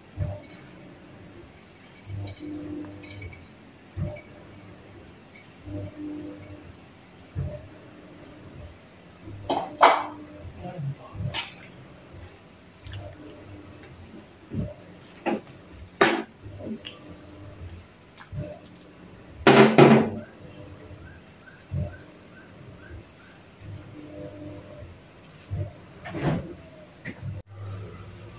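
A metal fork stirring noodles in soup in an aluminium wok, with a few sharp knocks and scrapes against the pan, the loudest about two-thirds of the way through. An insect chirps steadily in the background, a fast pulsing trill in long runs with short breaks.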